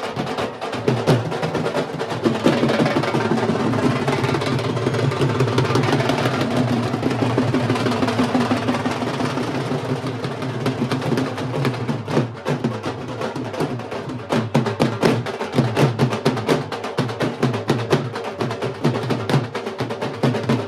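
Several dhol barrel drums beaten with sticks together in a fast, steady rhythm.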